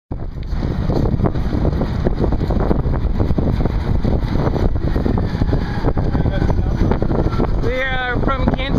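Wind buffeting the microphone and road rumble from a moving pedicab, a loud, steady rushing noise. A voice starts just before the end.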